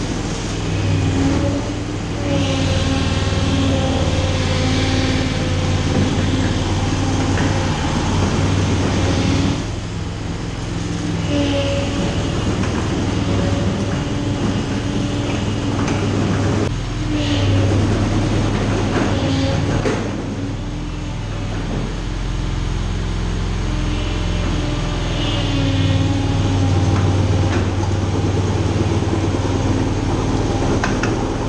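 Engine of a homemade half-scale tank running under load while the tank drives on its hydraulic track drives, its note rising and falling as the tank manoeuvres. There are a few knocks about halfway through.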